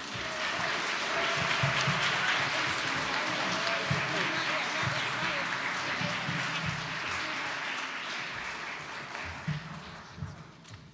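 Audience applauding. The applause swells up in the first second and gradually tapers off toward the end, with voices mixed in.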